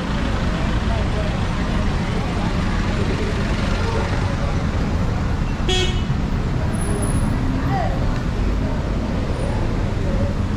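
Street traffic: cars and taxis rolling slowly past with a steady low rumble, over indistinct chatter from people along the sidewalk. A single short, high-pitched toot sounds a little past halfway.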